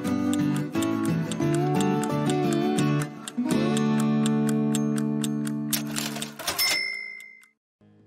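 TV programme break jingle: music with held chords under a quick, even ticking. It ends in a short swell and a brief high tone, then cuts to silence.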